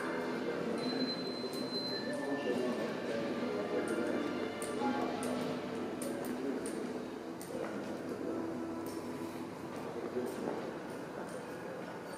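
Ambience of a large indoor hall: indistinct distant voices and faint background music or exhibit audio, with scattered light clinks and taps.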